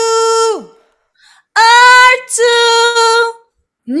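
A woman singing the words 'or two' as sustained notes held at one steady pitch. The first held note ends with a downward slide about half a second in, and after a short silence the two syllables follow as two long held notes. The take is judged in tune: 'Nickel'.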